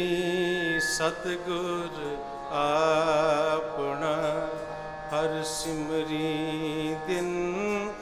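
Sikh gurbani kirtan: long, wavering held sung notes over a sustained harmonium accompaniment.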